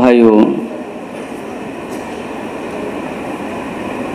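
A man's voice, in a sermon, stops about half a second in, followed by a steady, even background noise with no clear pitch or rhythm.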